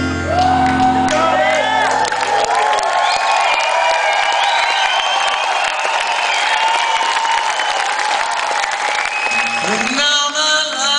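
Live rock band's chord rings on and drops away about two seconds in, leaving a concert audience cheering, whooping and singing out over a thin backing; the band's instruments come back in just before the end.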